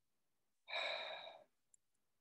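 A man's single breath, lasting a bit over half a second about two-thirds of a second in and fading out.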